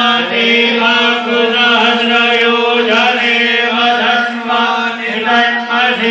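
Hindu mantra chanting in a ritual: voices recite on one steady pitch, with only the syllables changing above it.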